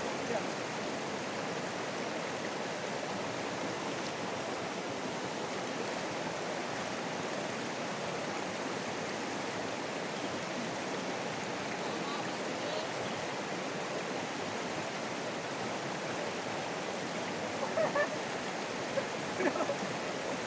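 Shallow river rushing over rocks and stones in a steady, even stream of water noise.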